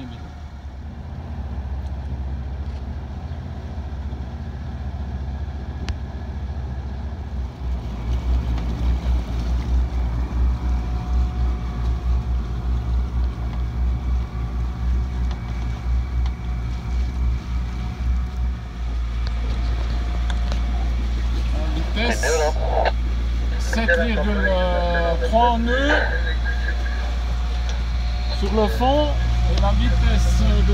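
Sailboat's inboard engine running under way as a steady low hum, with a pulsing throb through the middle stretch. Voices come in near the end.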